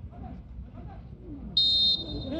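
A referee's whistle blown once, a short, loud blast of about half a second near the end, signalling the free kick to be taken. Low stadium crowd noise runs underneath.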